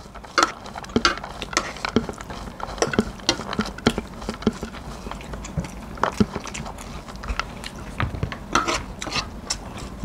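Metal spoon and fork clinking and scraping on a ceramic plate of rice, with chewing and mouth sounds between: many short, irregular clicks.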